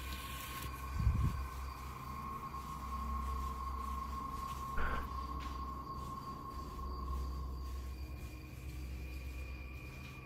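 A steady high-pitched tone held over a low hum, with a soft thump about a second in and a short click near the middle.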